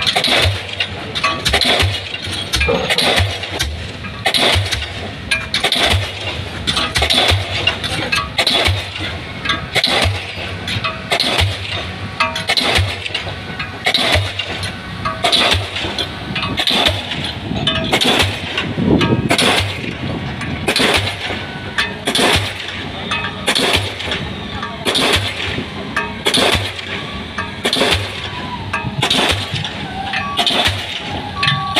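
Diesel pile hammer on a crawler crane driving a 600 mm concrete spun pile, striking in a steady rhythm of sharp blows, roughly one a second, over the rumble of the machinery.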